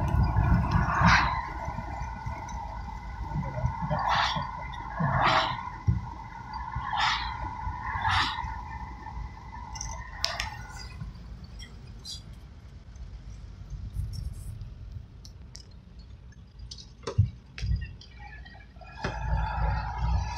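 A supercharged 1938 Graham six-cylinder car on the move, heard from inside the cabin, with a steady whine and a few short knocks. The whine cuts off about halfway through, leaving a lower rumble as the car slows, with a couple of sharp knocks near the end.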